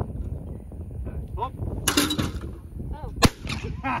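A single shotgun shot, sharp and by far the loudest sound, a little over three seconds in.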